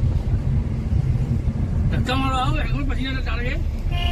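Steady low rumble of road and engine noise inside a moving car's cabin. A voice speaks briefly from about two seconds in.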